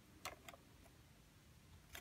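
Near silence, with two faint clicks in the first half second and another near the end as the metal wire thread guide of a plastic yarn cone winder is handled.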